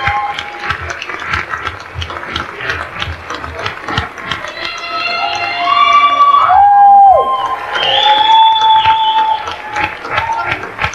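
Audience applauding and cheering, with loud high whistles in the second half, one of them sliding down in pitch.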